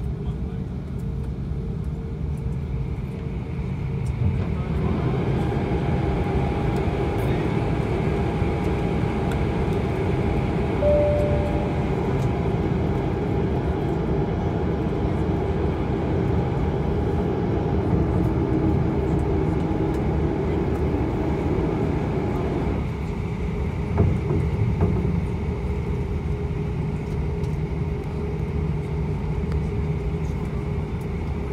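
Airliner cabin noise over the wing of an Airbus A340-500: a steady low rumble of engines and air systems. From about four seconds in, a louder hum with a steady whine joins it and cuts off abruptly about two-thirds of the way through. A single thump follows just after.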